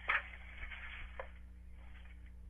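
A steady low hum runs throughout. A short, noisy rustle or burst comes just after the start and is the loudest sound, and a faint click follows about a second in.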